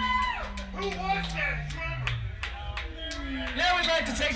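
Live funk-rock band playing: drum and cymbal hits over a long, slowly falling low slide, with voices over the top.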